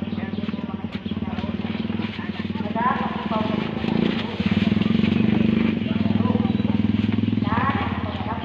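A motorcycle engine running close by, with a steady low hum that grows louder from about halfway through and drops back near the end, while people talk over it.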